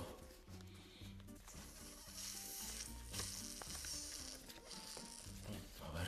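Crinkling, rustling of a freshly opened foil sticker packet and its paper stickers being handled, strongest for a couple of seconds in the middle, over quiet background music.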